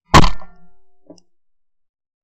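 A single 12-gauge shot from a Beretta 682 Gold E over-and-under shotgun: one sharp, loud crack that dies away within about half a second. A faint short knock follows about a second later.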